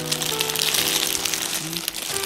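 Clear plastic USANA HealthPak vitamin sachets crinkling as a hand stirs through a pile of them, heaviest in the first second and a half, over background music with long held notes.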